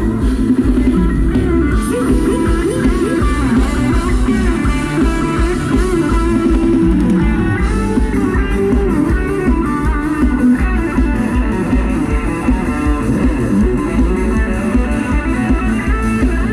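Loud Thai ramwong dance music played over a PA: an electric guitar melody over bass and a pulsing beat.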